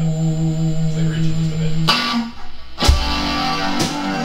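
Electric guitar run through effects pedals, holding sustained notes that change about two seconds in. Drum hits come in near the end.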